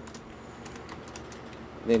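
Typing on a computer keyboard: a few scattered, faint keystrokes.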